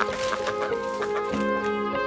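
A chicken clucking and squawking during the first second, over background music of held notes.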